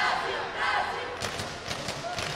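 Yelling and kihap shouts during a taekwondo bout as the fighters kick, with a few sharp slaps from kicks and feet on the mat in the second half.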